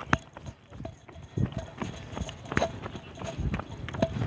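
Running footsteps on a concrete road, a quick steady rhythm of a few knocks a second, with the handheld phone jostling in time with the stride.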